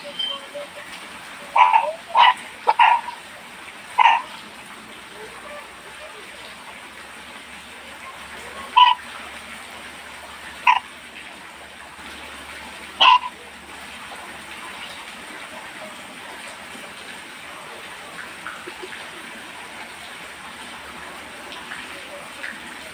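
A dog barking: four short barks close together, then three single barks a couple of seconds apart, over a steady hiss.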